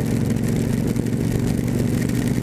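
Cruiser motorcycle engine running at a steady cruising pace, heard from the rider's seat, with an even rush of wind and road noise over it.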